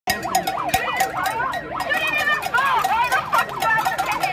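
A handheld megaphone's built-in siren sounding a fast wail that sweeps up and down several times a second, with voices shouting over it in the second half.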